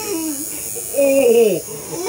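A man whimpering in pain through the hand over his mouth, two falling wails, over the steady buzz of a tattoo machine.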